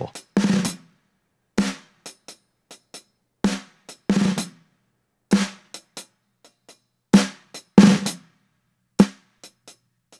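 Recorded snare drum track played through an FMR Audio RNC1773 compressor at its most extreme setting, 25:1 ratio with the fastest attack and release: about eight loud snare hits, roughly one a second, with softer ghost taps between them.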